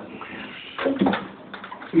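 A pause between spoken words: low room noise with a brief short sound about a second in, then a man's voice starting at the very end.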